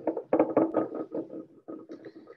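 Pottery sherds being handled and set down on a hard surface: a quick, irregular run of a dozen or so knocks and clinks, each with a short ring.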